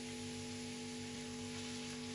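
Zucchini, onion and tomato sizzling steadily in a frying pan, a soft even hiss.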